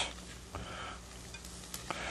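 Faint, soft sounds of a spoon ladling ranchero sauce onto a plated chili relleno, with a small click near the end, over a quiet steady room hum.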